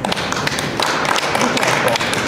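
A small group of people applauding with hand claps.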